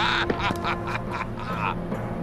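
A man's voice crying out, loud at first and then breaking into a run of short, choppy bursts.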